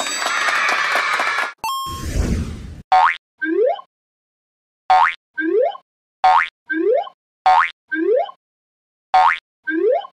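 Cartoon sound effects: a shimmering sparkle ending in a short ding and a falling whoosh, then five times a short pop followed by a quick rising boing, about every one and a half seconds, each marking a toy head being pushed down into its cup.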